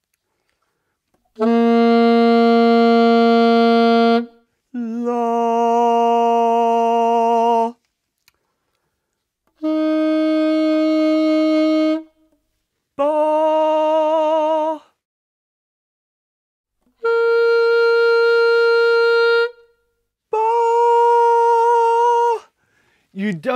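Alto saxophone playing a held note, then a man singing the same pitch, three times over, each pair higher than the last. The sung notes waver slightly where the saxophone notes hold steady.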